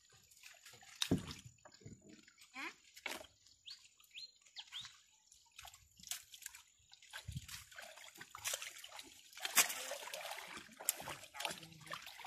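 Water splashing and sloshing as a fishing net is hauled and emptied in a small boat, with scattered knocks and rustles of net and plastic basket. The splashing grows denser and louder from about three-quarters of the way in.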